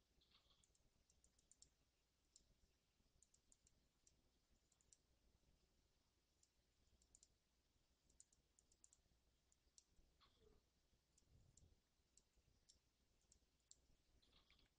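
Near silence broken by faint, irregular little clicks in small clusters, from the computer input device of a digital painter at work.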